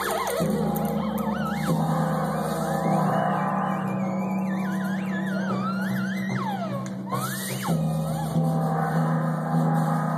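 Theremin played by hand: a gliding, wavering pitch that slides and swoops up and down with vibrato, with one big swoop up and back down about three-quarters of the way through. Steady low held notes sound underneath, shifting a few times.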